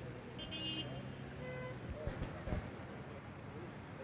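Open-air street ambience: a steady low hum of road traffic with faint, scattered voices of people nearby. A couple of brief high tones sound within the first two seconds.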